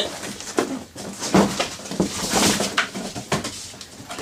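A large cardboard shipping box being handled and stood on end: rustling and scraping of cardboard with a series of irregular knocks, the loudest about a second and a half in and again at about two and a half seconds.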